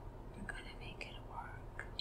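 A person's faint whisper and soft mouth sounds over a steady low hum of room tone.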